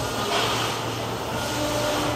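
Steady vehicle engine noise: a low hum under a rushing hiss, swelling slightly about once a second.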